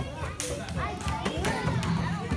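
Many children talking and calling out at once in a classroom, with a couple of sharp taps or slaps among the chatter.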